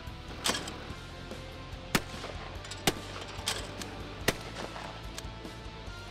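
About five sharp gunshots at uneven intervals, over background music.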